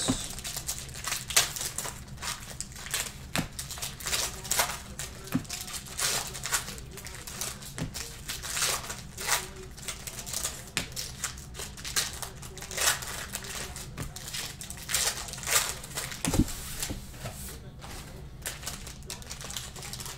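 Basketball trading cards flipped through by hand, an irregular run of soft clicks and rustles as the cards slide and snap off the stack, over a low steady hum, with one dull knock about sixteen seconds in.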